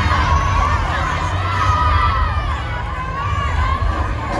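A cheer squad and arena crowd yelling and cheering, many high voices at once over a steady low rumble.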